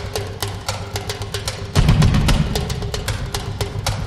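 Television opening theme music: a fast, even run of crisp percussive ticks over a drum-and-bass figure that swells up heavily a little under two seconds in.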